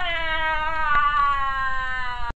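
A high-pitched voice screaming in one long, drawn-out wail: a mock scream of pain from the talking bacon that is burning in the pan. The pitch drops at the start, then holds steady.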